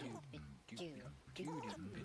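Electronic music built from cut-up voice sounds without clear words, the same short pattern repeating a little more than once a second.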